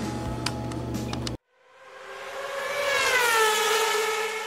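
A few light clicks of the plastic model monocoque being handled, then an abrupt cut and an editing sound effect: a siren-like tone that swells in, slides down in pitch and starts to fade.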